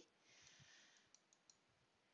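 Near silence, with a faint soft hiss and then three faint, quick clicks about a second in, from a computer mouse being clicked to select text.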